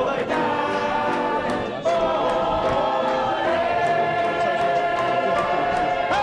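Sing-along music: several voices singing together in chorus over a light steady beat, settling about two seconds in onto one long held note.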